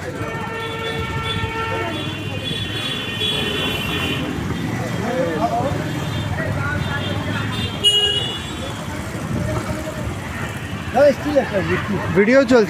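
Street traffic rumbling steadily, with two long vehicle horn blasts one after the other in the first few seconds, the second higher-pitched. A single sharp knock comes about eight seconds in.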